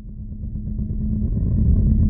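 Car engine sound effect, a low idling rumble that fades in from silence and grows steadily louder.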